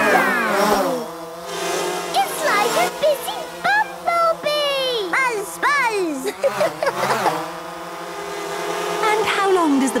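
Cartoon toy quadcopter drone buzzing steadily in flight, its propeller hum holding one even pitch, with voices gliding up and down over it.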